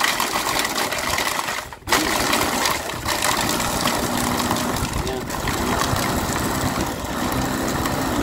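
A 200 W electric food chopper with a stainless-steel bowl crushing ice cubes: its motor runs and the spinning blades grind and rattle the ice. It cuts out for a moment just before two seconds in, then runs on steadily.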